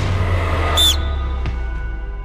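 Edited background music sting: a deep bass hit, then a short, bright, high-pitched electronic chirp just under a second in, over held chords that slowly fade.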